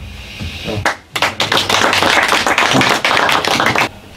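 Audience applause, many hands clapping, starting about a second in and cutting off just before the end.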